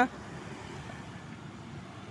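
Steady traffic noise as a motor scooter rides past, after a short called-out "ah" right at the start.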